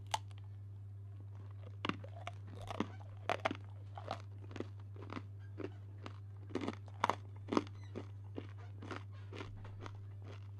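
A person chewing a crunchy snack close to a microphone: a run of irregular crunches, about two a second, over a steady low hum.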